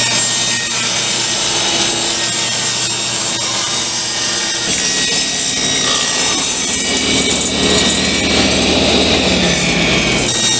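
Table saw running and ripping maple plywood, the blade cutting steadily through the sheet. About five seconds in the sound changes as a narrower plywood strip is cut.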